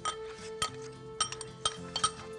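A metal spoon and ceramic bowl clink sharply against a ceramic dish about six times while seasoning is spooned over meat. Soft background music holds a steady note underneath.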